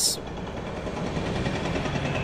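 Steady mechanical background din.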